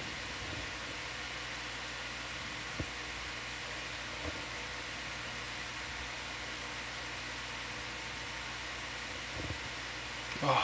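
Steady background hiss with a low, even hum: the room tone of the ROV control room's audio feed. A faint click comes about three seconds in and a softer one a second later.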